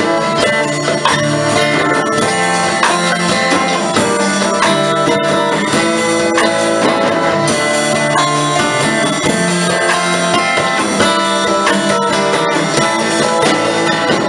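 Small live band playing an instrumental passage without vocals: acoustic guitars strummed and picked over a steady backing of bass and drum kit.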